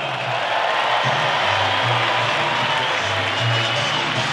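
Stadium crowd applauding and cheering, with music and a recurring bass line playing over it.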